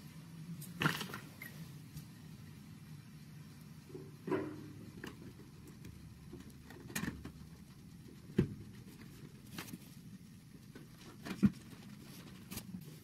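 Round plastic tail lights being pressed into rubber grommets in a steel trailer frame: scattered short knocks and rubbing every second or two, over a faint low steady hum.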